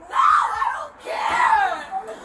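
A woman screaming in distress: two loud, high cries, each just under a second long, one after the other.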